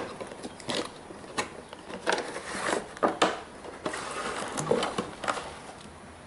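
Cardboard box flap opened and a clear plastic tray holding the antenna slid out and handled: irregular rustles, scrapes and light knocks of cardboard and plastic packaging.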